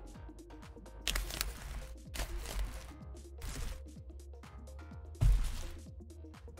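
Foil trading-card booster packs crinkling and tearing open in several short bursts over steady background music. A louder thump comes about five seconds in.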